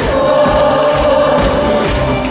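A mixed group of male and female singers singing together into microphones, backed by a live band with drums, in a pop-trot stage performance.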